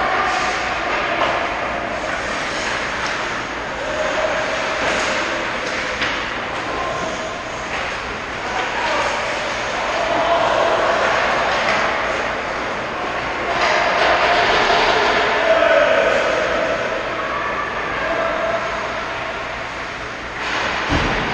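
Ice hockey play in an echoing indoor rink: a steady wash of skates on the ice, a few sharp knocks of sticks or puck, and distant shouting voices.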